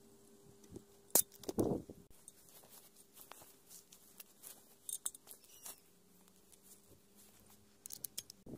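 Small clicks and knocks of hands handling tools and fittings. There is one sharper click and a short rough burst about a second and a half in, then scattered faint ticks over a low steady hum.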